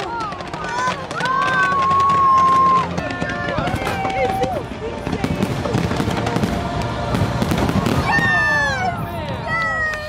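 Fireworks bursting and crackling, with a dense run of bangs in the middle, over a fireworks-show soundtrack of music with a singing voice holding long notes.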